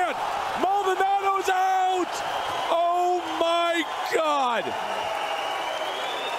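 A man shouting excitedly in several long held yells, the last one falling in pitch, over crowd noise at the moment of a knockout.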